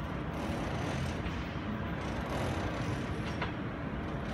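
Taiwan Railways EMU600 electric commuter train pulling away from the station, a steady low rumble of the departing train.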